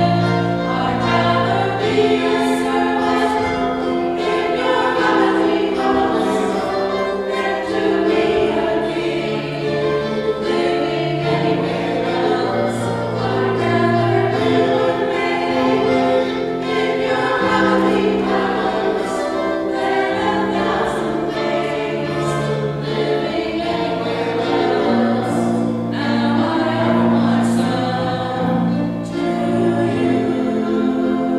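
Church choir singing with accompaniment that holds long, sustained low notes beneath the voices.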